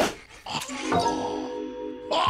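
Cartoon soundtrack: a loud, sudden falling swoosh, then the cartoon bear's whimpering vocal sound over held musical notes.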